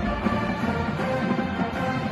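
Marching band playing live in a stadium: held chords from the horns over light percussion.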